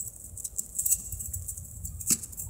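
Faint, scattered light clicks and rattling of a coil spring toy being played with.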